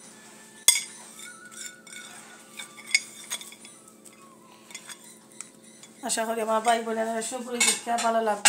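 Dishes clinking as ingredients are handled: a sharp clink about a second in, another near three seconds, and a few softer taps, over a faint steady hum. A voice starts in the last two seconds.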